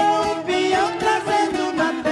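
Ten-string violas caipiras strummed in a steady rhythm, about four strokes a second, with a man singing a moda de viola over them.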